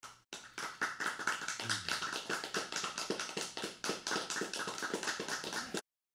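Applause: many quick, irregular hand claps that cut off suddenly near the end.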